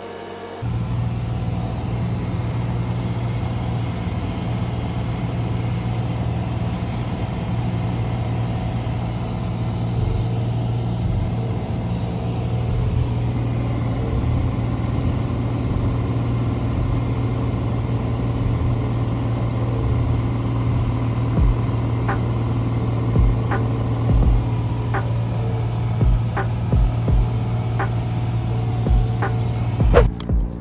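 Single-engine piston airplane's engine and propeller droning steadily in cruise flight, heard inside the cabin. Several short low thumps come in over the last nine seconds or so.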